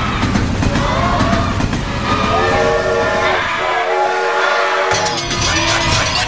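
A noisy rumble with a few voices, then a train horn chord of several steady tones held for about three seconds. Music begins near the end.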